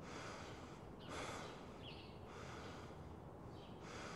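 Quiet, quick rhythmic breathing, about one breath every second and a quarter.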